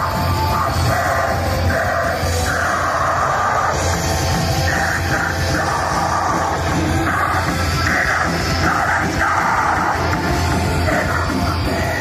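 Live black metal band playing at full volume: distorted electric guitars, bass and drums in a dense, continuous wall of sound.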